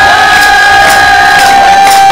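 One long, steady high note held by a singer while a group of singers cheers and claps along, in a live Nepali dohori folk-song session.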